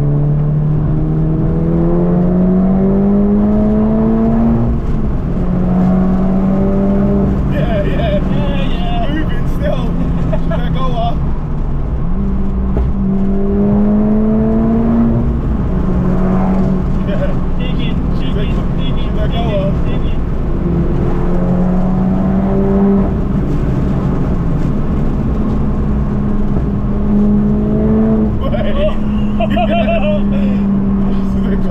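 Tuned Mk7 Golf GTI's turbocharged 2.0-litre four-cylinder heard from inside the cabin, pulling under throttle: the engine note climbs in pitch over a few seconds and drops back at each gear change, several times over.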